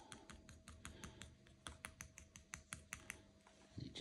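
Rapid light tapping as paint is dabbed onto a prop sign to age it, about five even taps a second, stopping shortly before the end.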